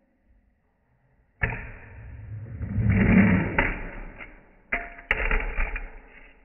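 Scraping and rolling on a fingerboard setup's metal rail and tabletop. The noise starts suddenly, swells and fades with a few sharp clicks, breaks off near the end and starts again with a knock.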